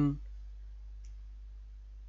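A low steady hum, with the last of a spoken word at the very start and a single faint computer-mouse click about a second in as a folder is opened.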